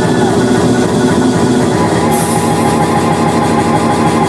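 A DJ's mix of dance music playing loud over a club sound system. About two seconds in, a bright hissing layer and a new held tone come in.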